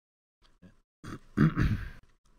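A man clearing his throat at the microphone: a short, loud, rough burst lasting about a second, starting halfway through.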